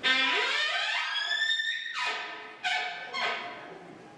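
Elk bugle blown on a call: a low note that rises steeply into a high, held whistle and breaks off after about two seconds, followed by two shorter notes.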